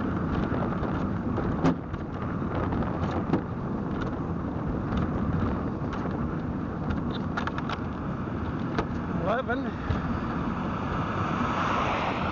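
Steady road and wind rush from a pedalled velomobile rolling on pavement, with a few sharp clicks and a short rising whine about nine seconds in. The rushing swells near the end as an oncoming car passes.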